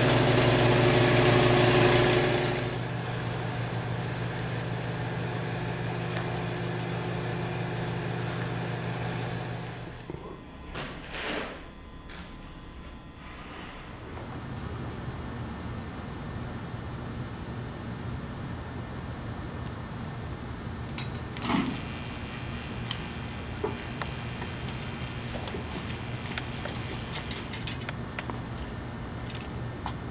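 Steady electrical hum from a neon transformer powering a newly filled neon tube while it burns in, loudest in the first couple of seconds. The hum stops about ten seconds in. A quieter, even background noise follows, with a few faint clicks.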